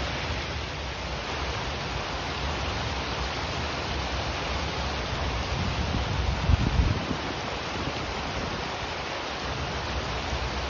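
Steady rushing noise, with a low rumbling buffet about six to seven seconds in.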